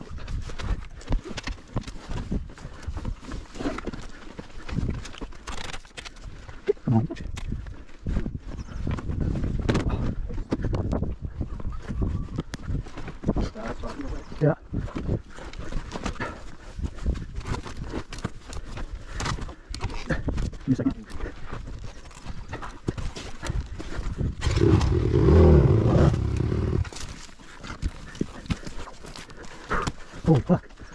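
A bike riding over a rough, rocky trail: continuous irregular clattering and rattling knocks over a rumble of wind on the microphone, with a loud gust of wind rumble near the end.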